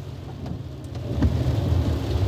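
Low rumble inside a car's cabin, with no steady tone, growing louder about a second in.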